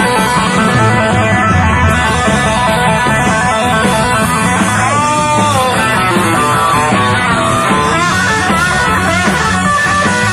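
A live blues-rock band plays hard, with an electric guitar leading over the band. The guitar bends notes about halfway through and again near the end.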